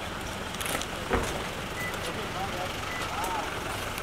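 Street noise of a crowd and idling cars, with scattered voices. A sharp knock about a second in is the loudest sound, and a short high beep sounds three times about a second apart.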